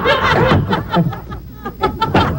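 Audience laughter mixed with a man's short shouted words. The laughter is loud in the first second, dips briefly, and picks up again near the end.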